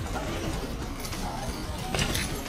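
Outdoor street ambience: a steady low rumble with faint bird calls over it.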